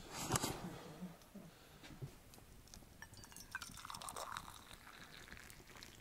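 Soft clinks and knocks of a soot-blackened metal pot against a metal mug as a hot brew is poured, the sharpest knock about a third of a second in.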